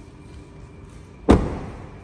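Rear door of a 2024 Kia Niro being shut, closing with a single thud just over a second in.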